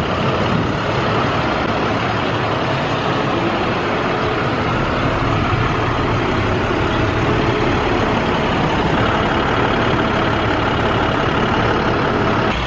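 Engine of a truck-mounted boom lift running steadily.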